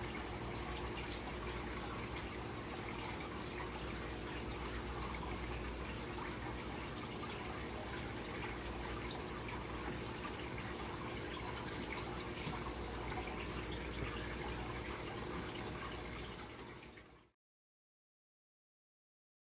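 Steady kitchen background noise: an even hiss with a low, steady hum beneath it. It fades out abruptly near the end.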